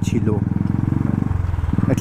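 Royal Enfield Classic 350's single-cylinder engine running under way, its exhaust beating in a fast, even pulse. The beat shifts briefly a little past the middle.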